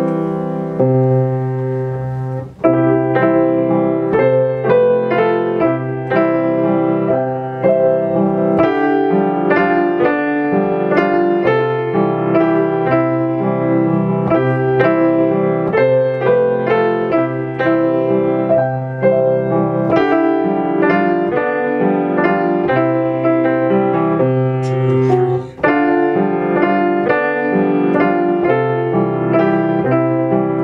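Grand piano played solo: a waltz-time piece with a broken-chord accompaniment, notes overlapping continuously. There are two brief breaks in the playing, one near the start and one late on.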